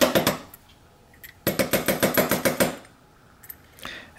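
Rapid metallic clicking and rattling from a lock body as its pins are dumped out. There is a short burst at the start, a longer run of clicks in the middle, and a few single clicks near the end.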